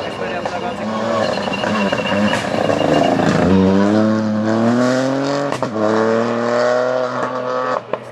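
Ford Fiesta rally car accelerating hard on a tarmac stage, its engine note climbing steadily through the revs. It drops sharply at an upshift a little past halfway, then climbs again.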